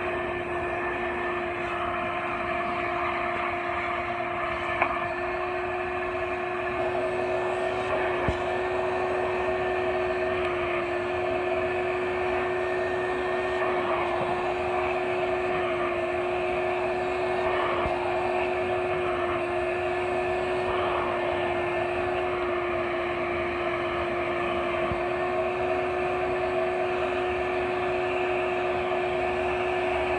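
Shop vac motor running steadily with a constant whine, powering an upholstery extractor as its clear tool is drawn over the wet couch fabric.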